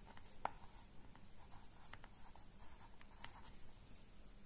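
Pencil writing a short word on workbook paper: a run of faint, short scratching strokes.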